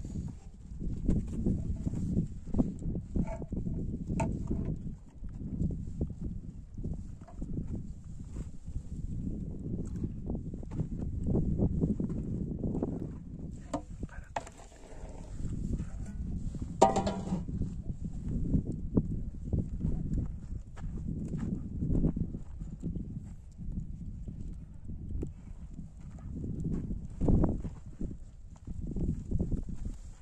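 Aluminium cooking pots and a metal lid being moved and set down on dirt, a string of knocks and scrapes over a continuous low rumble, with a brief metallic ringing scrape about halfway through.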